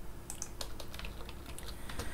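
Computer keyboard being typed on: an irregular run of light key clicks as new lines are entered in a code editor.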